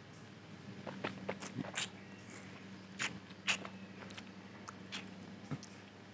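A sip of neat gin from a tasting glass, then scattered faint lip smacks and tongue clicks as the spirit is tasted in the mouth.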